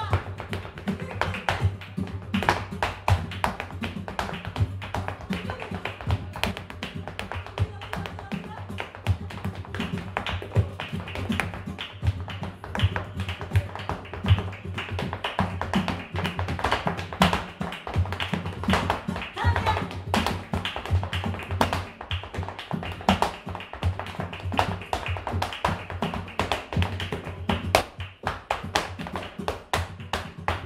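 Flamenco footwork (zapateado): fast, uneven heel and toe strikes of dance shoes on a wooden stage floor, over flamenco guitar.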